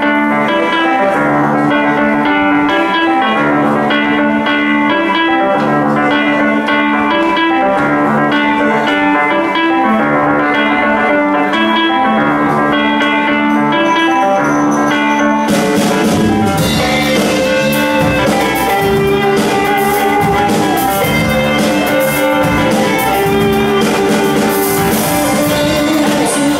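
Live blues band playing: a repeating riff on electric guitar, bass and keyboard, with the drum kit and cymbals coming in fully a little past halfway.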